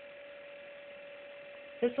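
Steady electrical hum at one middle pitch, with fainter higher tones above it; a man's voice begins near the end.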